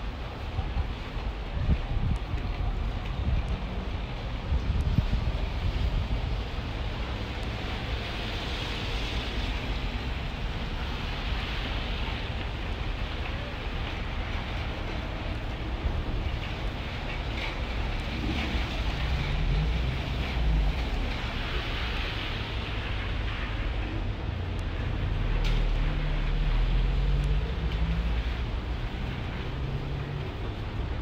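Outdoor street ambience: wind rumbling on the microphone, with the hiss of passing traffic swelling and fading twice.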